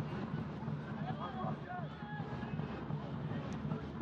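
Soccer match ambience from the pitch microphones: a steady low rumble with faint distant voices calling out between about one and two and a half seconds in.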